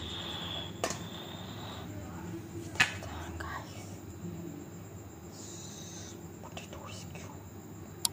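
A plastic ice cube tray being handled and turned over, giving two sharp clicks about one and three seconds in, over faint low murmured voice.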